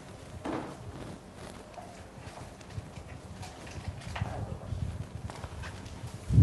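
Quiet lecture-hall room noise with a low rumble and scattered faint knocks and rustles.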